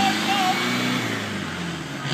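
An off-road 4x4's engine revving. The revs are held high at the start, then ease off and fade slightly over the next two seconds. A brief shout comes over it at the start.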